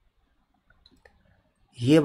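Three faint computer-mouse clicks about a second in, in near silence.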